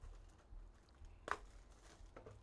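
Cardboard trading-card box being opened by hand: faint rustling of the box, with one sharp snap of cardboard a little past halfway.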